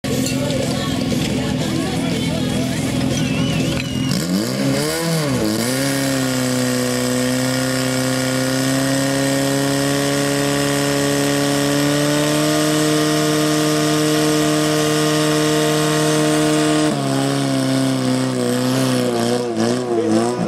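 Portable fire pump engine running hard during a firefighting-sport fire attack. About four seconds in its pitch dips and climbs, then it holds a steady high speed until it drops back about three seconds before the end, with voices over it.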